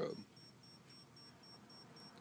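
A 2-AA battery EL-wire power inverter whining faintly in short high-pitched beeps, about three or four a second, as it pulses the wire on fast strobe mode.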